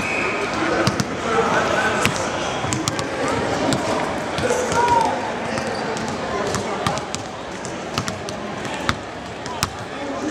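Several basketballs bouncing on a hardwood court, irregular sharp thuds from more than one ball, over a steady background of indistinct voices.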